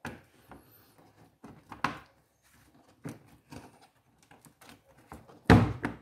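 Black plastic housing of a pressure-washer spray gun being handled and fitted together: scattered light plastic clicks and knocks, with a louder thump near the end as the part is pressed home or set on the bench.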